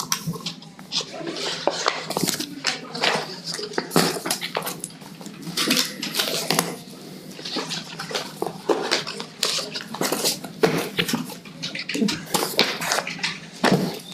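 Sheets of paper rustling and being shuffled and handled on a table in quick, irregular bursts, over a steady low hum.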